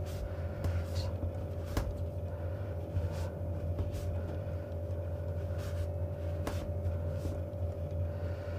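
A cloth wiping the insulated cores of a three-core flex cable: faint rustling and a few light clicks, spread irregularly. A steady low hum runs underneath.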